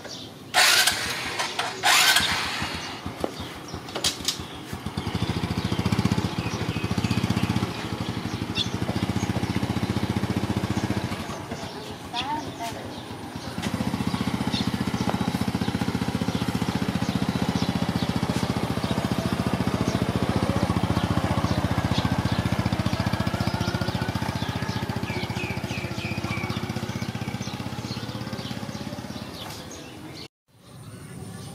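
A small Honda step-through motorbike's single-cylinder four-stroke engine running and pulling away, its steady drone slowly fading as it rides off. Two loud, sharp noises come in the first couple of seconds.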